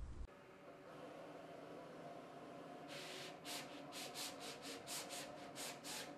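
Roland print-and-cut machine running a perforated cut: a faint steady motor hum, then from about three seconds in a quick run of short hissing strokes, about three a second, as the cutting carriage moves and the blade cuts through the material.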